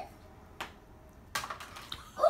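A few light, sharp clicks and taps with quiet between them, the loudest about one and a half seconds in.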